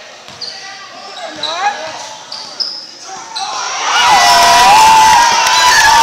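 Indoor basketball game: sneakers squeaking on the gym floor and a ball bouncing, then about four seconds in a sudden burst of loud shouting from the crowd.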